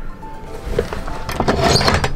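Background music, with a low rumble coming in about half a second in and a few short knocks and clicks near the end.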